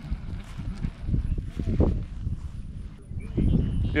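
A person speaking from a distance, faint and hard to make out, over an uneven low rumbling noise.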